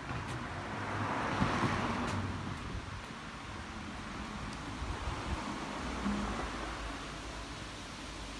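Road traffic: a passing car's noise swells to a peak about a second and a half in and fades away, with a second, fainter pass around the middle.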